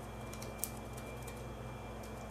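A fingernail scoring foam pressed against a small plastic microphone body: a few faint scratchy ticks, the clearest just past half a second in, over a steady low electrical hum.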